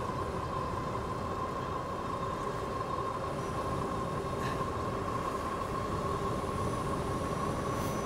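Philodo H8 all-wheel-drive e-bike under way on asphalt: a steady high motor whine over a rushing wind and road noise.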